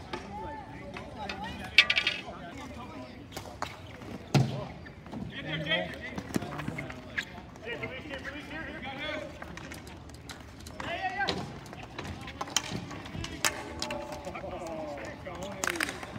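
Ball hockey play on a plastic sport-tile court: sharp knocks of sticks striking the ball and each other, the loudest about two seconds in and again near four and a half seconds, with more near the end. Players and onlookers call out indistinctly in the background.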